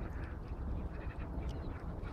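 Wind rumbling on the microphone, with a few faint short clicks over it.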